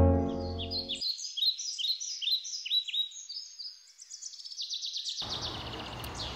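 Birds chirping: a run of short, high, downward-sweeping calls, while a low sustained music chord dies away in the first second. Near the end a steady outdoor background hiss comes in with a fast, high trill.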